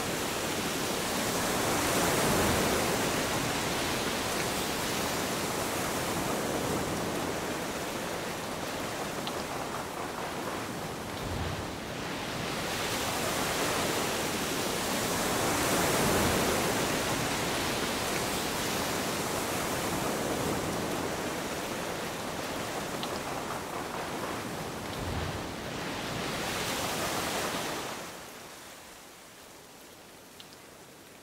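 Steady rushing of wind and churning sea water around a boat under way, swelling and easing in waves, and fading out near the end.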